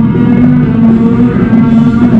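Live rock band playing loudly: electric guitars, bass guitar and drum kit.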